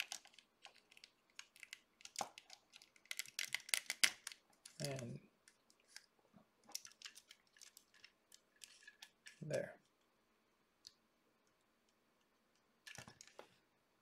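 Light plastic clicks and taps of a 1/12-scale action figure's parts being handled and fitted together, with a quick run of clicks about three to four seconds in and a few more near the end.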